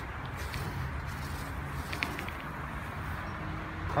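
Steady low background rumble, with a few faint clicks about halfway through.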